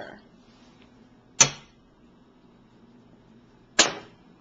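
Two sharp knocks, about two and a half seconds apart, as a small ceramic bowl is tipped and knocked against a saucepan to empty it.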